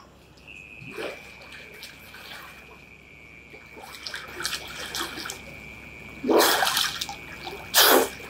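A man splashing about in a swimming pool, the water lapping and splashing, with two loud, short blows of breath near the end as he surfaces and wipes the water from his face.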